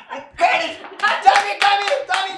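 Madal, a Nepali double-headed hand drum, struck with the hands in a quick, uneven run of beats starting about half a second in. The higher head rings briefly with a pitched tone after several strokes.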